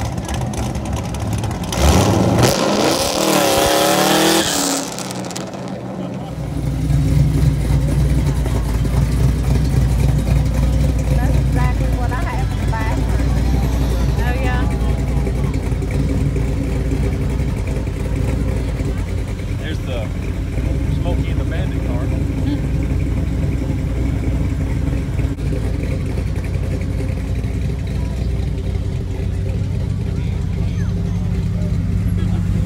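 Engines of show cars in a slow cruise procession rumbling past, low and steady. About two seconds in, one car revs loudly for a couple of seconds.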